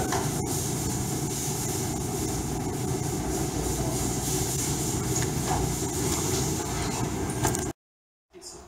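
Steady low rumbling background noise with no speech, cutting off abruptly near the end.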